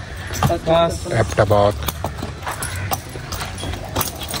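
Metal chains and fittings on a horse's bridle and tack jingling and clinking as the horse shifts and steps while a rider mounts.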